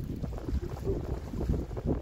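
Wind buffeting the microphone in a gusty low rumble, with the sea washing against the rocks beneath.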